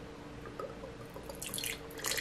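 Red wine starting to run through a bottle-mounted aerator into a wine glass: a few faint drips at first, then a short splash around the middle of the second second as the stream begins to hit the glass, growing louder near the end.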